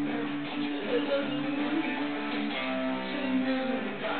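Electric guitar played through an amplifier: held notes and chords that change pitch every second or so.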